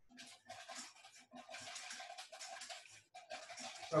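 Wire whisk beating melted butter into the liquid ingredients for pancake batter in a bowl: a quick, uneven run of soft scraping strokes.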